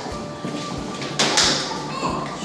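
A thud with a short hissing burst about a second in, over faint background music and play-area noise.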